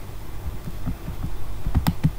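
Steady low electrical hum with a few soft low thumps, and one sharp computer mouse click near the end.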